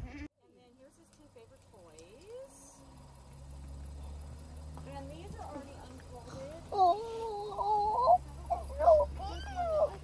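Low steady hum of the parked vehicle idling, heard inside the cabin, starting about three seconds in. From about seven seconds in, high, wavering vocal sounds rise and fall over it.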